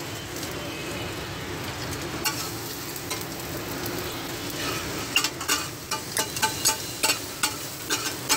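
Egg-and-mince tiki sizzling on a large flat iron tawa. From about halfway through, a metal spatula clacks against the griddle in quick strokes, about four a second, as the food is chopped and turned.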